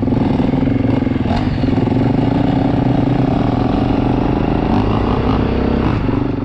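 Husqvarna enduro motorcycle engine running steadily under way, heard from on the bike itself while riding.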